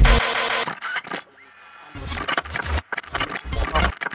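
Electronic DJ music breaking down: the full beat cuts out a little under a second in, leaving a second of sparse clicks and near quiet. From about halfway, choppy bass-heavy stuttering sounds come in, then drop out briefly near the end.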